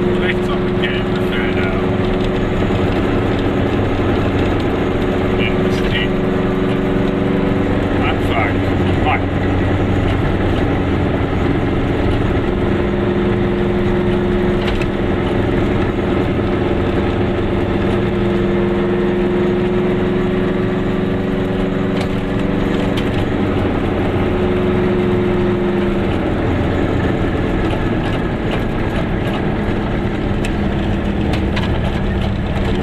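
Car engine and road noise inside a moving car's cabin: a steady engine note over tyre rumble, changing pitch a few times.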